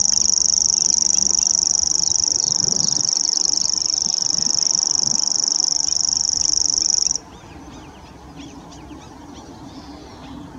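Grasshopper warbler reeling: one long, high, even trill that cuts off suddenly about seven seconds in. Faint short calls of other birds follow.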